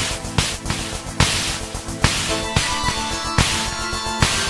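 Synthwave electronic music: sharp, hissy snare-like hits on a steady beat, a little more than once a second, over held synthesizer chords. Brighter synth notes join about halfway through.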